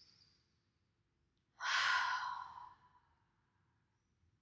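A woman's long audible sigh, breathed out through the mouth about one and a half seconds in and trailing off over a second or so, after a faint breath at the start.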